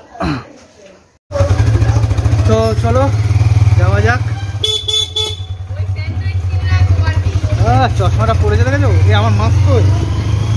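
Motorcycle ride: a loud, steady low rumble of engine and wind on the microphone starts suddenly about a second in. A vehicle horn honks once, briefly, about five seconds in.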